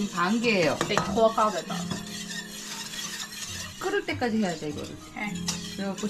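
Wire balloon whisk stirring a thin glutinous rice flour and water mixture in a stainless steel pot, with a scratchy scraping and light clinking against the pot.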